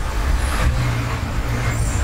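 A steady low engine-like rumble with a faint hiss above it.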